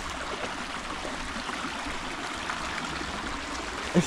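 Small, shallow stream running over stones: a steady trickle.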